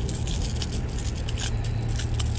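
Light scattered clicks and scrapes of a jerkbait's treble hooks being worked out of a jack crevalle's mouth by hand, over a steady low rumble.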